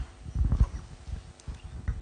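A few low thumps and knocks picked up by a desk microphone, a cluster about half a second in and a couple more near the end, as of the microphone or the table being bumped or handled.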